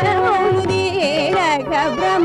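Carnatic classical music: a woman sings gliding, heavily ornamented phrases. A violin shadows her line over the steady drone of a tambura.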